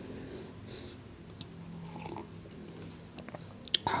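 A man quietly sipping and swallowing coffee, with small mouth and cup sounds and a sharp click near the end.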